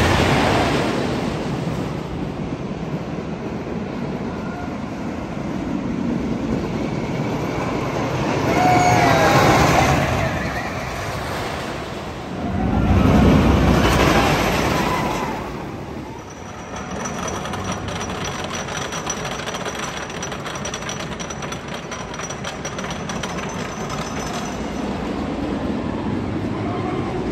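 The Twister wooden roller coaster's train running along its wooden track. It swells up three times as it passes, loudest about thirteen to fifteen seconds in, then drops to a steadier, lower rumble.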